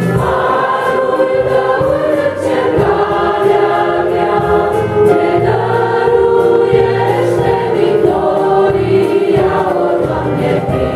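A women's vocal group singing a Romanian Christian hymn in close harmony, with electronic keyboard accompaniment carrying a steady bass line.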